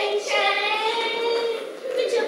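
A girl's high voice holding one long, drawn-out note for about a second and a half, then breaking off near the end.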